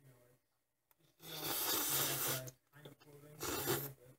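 A person slurping instant ramen noodles into his mouth: a long slurp of about a second and a half, then a shorter one near the end.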